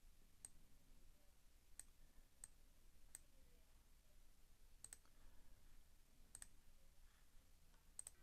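Near silence broken by faint, scattered computer mouse clicks, about eight in all, two of them in quick pairs. The last click, right at the end, starts playback.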